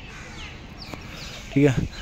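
Crows cawing in quiet outdoor ambience, with a man's voice starting briefly near the end.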